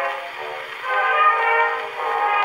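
Orchestral waltz played from an acoustic-era Pathé 90 rpm disc on a wind-up cabinet gramophone: held chords that soften briefly just under a second in, then swell again.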